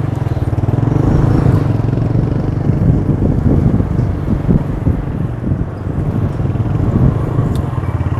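Engine of a small vehicle running steadily while riding along a town street, heard from on board, with traffic noise around it.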